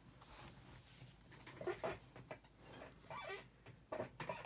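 An office chair creaking as a person grips it and sits down: a few short, faint squeaks with light rustling and knocks.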